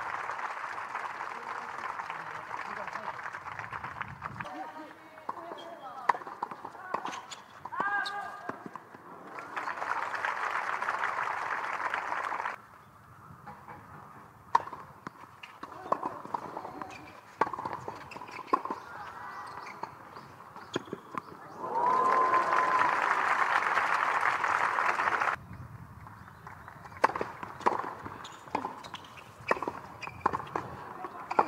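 Professional tennis rallies: sharp racket-on-ball strikes about a second apart, broken by bursts of crowd applause after points. The loudest burst comes about twenty-two seconds in. Each applause burst cuts off abruptly at an edit.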